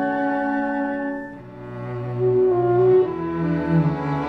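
Small orchestra playing, bowed strings to the fore with low cello and double-bass notes. The sound thins out about a second and a half in, then swells back up.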